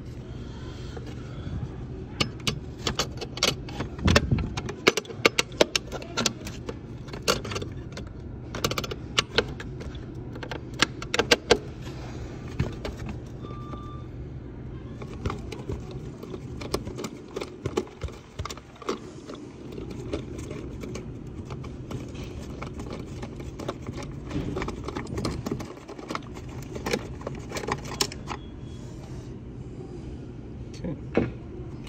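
Small metallic clicks and clinks of hand tools and contactor parts being handled while the wires are moved over one by one to a replacement contactor on a Frymaster fryer. The clicks come in busy flurries, thinning out through the middle, over a steady low hum.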